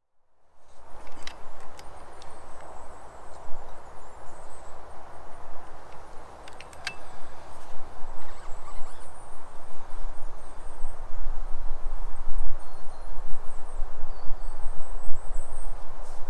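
Wind gusting through the trees and buffeting the microphone, growing stronger toward the end, with a few faint clicks and faint high chirping.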